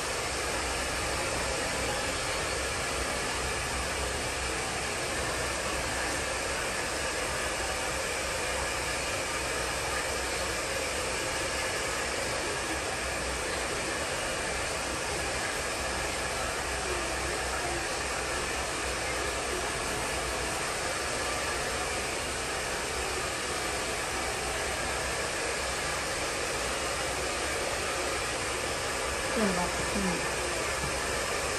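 Steady, unchanging whir of a small electric salon appliance motor with an airy hiss. A brief louder sound comes just before the end.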